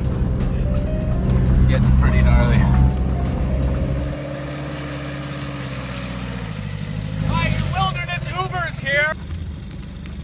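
Mitsubishi Delica 4x4 van's engine running steadily while driving, heard from inside, for about the first four seconds. It then drops away suddenly, and music with voices carries on.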